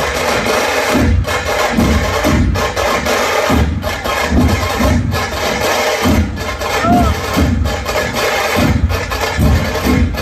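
A large drum ensemble playing together: big barrel drums and smaller drums beat a loud, driving rhythm, with heavy low beats about twice a second over a dense, bright clatter of percussion.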